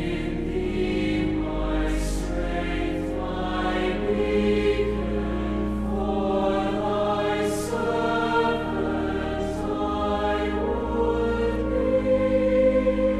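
Large mixed choir of university students singing sustained chords, with the sung consonants coming through as brief hisses. A pipe organ accompanies it with steady low bass notes.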